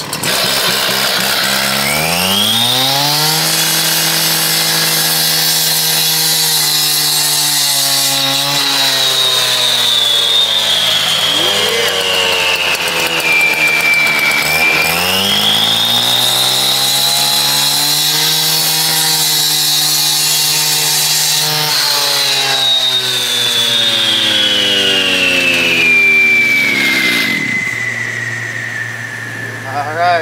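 Two-stroke gas cut-off saw revving up to full speed about a second in and cutting through a concrete capstone, its pitch held high with a short dip and climb back midway. Its engine then winds down in the last few seconds to a steady idle.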